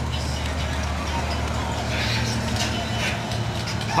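Diesel truck engine idling, a steady low hum.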